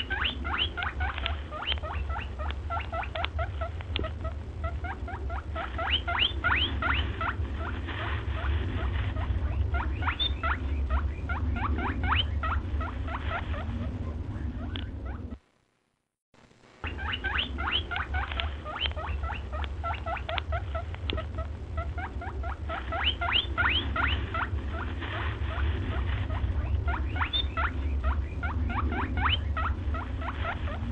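An edited-in sound track of rapid, high squeaky chirps in quick clusters over a low steady hum. The same stretch of about fifteen seconds plays twice, broken by a second or so of silence halfway.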